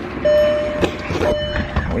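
A car's electronic warning beeper sounding twice, each a steady half-second beep, with a short knock between them.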